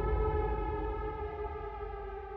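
Siren-like wail of several steady tones held together, fading away steadily after a loud hit.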